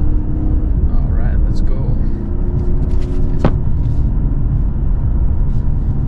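In-cabin sound of the 2023 BMW 540i's B58 turbocharged inline-six pulling in Sport Plus mode over steady road rumble. About halfway through there is a sharp click and the engine note steps down to a lower pitch.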